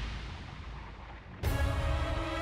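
Dramatic soundtrack sound effect: a whooshing noise swell fades away, then a sudden booming hit comes about one and a half seconds in, followed by a held music chord.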